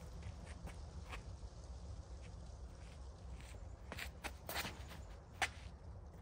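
Footsteps and scuffs on a concrete tee pad as a disc golfer steps into a throw, the strongest in the last two seconds, over a low wind rumble on the microphone.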